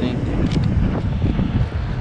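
Wind buffeting the camera microphone outdoors, a steady low rumble.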